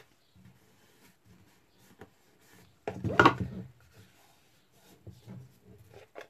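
Faint rustling and rubbing of hands handling a paper-covered MDF box, with a small tick about two seconds in.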